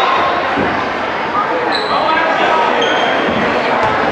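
A basketball bouncing on a hardwood gym court amid a steady hum of voices, with a few short high squeaks of sneakers on the floor.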